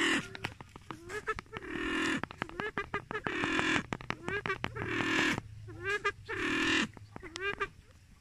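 Male silver pheasant calling: about five loud, harsh, falling squawks roughly every one and a half seconds, with quick runs of clicking notes and short rising chirps between them. The calling stops near the end.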